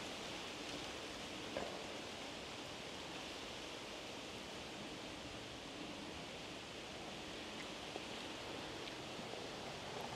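Faint, steady outdoor background noise with no distinct event, and a small tick about one and a half seconds in.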